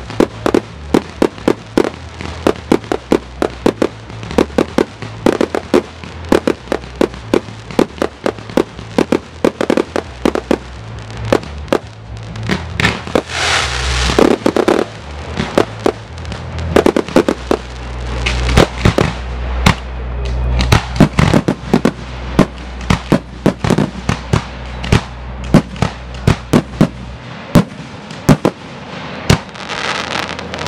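Fireworks display: a rapid, continuous string of bangs from bursting aerial shells, several a second, thickening into louder barrages about halfway through and again a little later.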